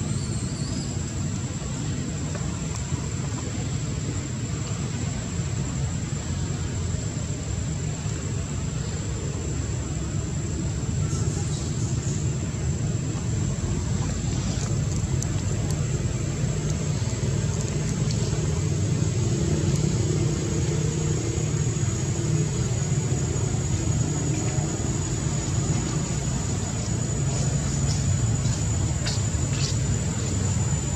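Steady low outdoor rumble with a thin, steady high-pitched whine above it, and a few faint clicks near the end.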